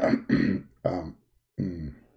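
A man's voice making four short wordless vocal sounds.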